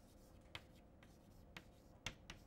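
Chalk writing on a blackboard, faint: light strokes with two brief taps of the chalk, about half a second in and about a second and a half in.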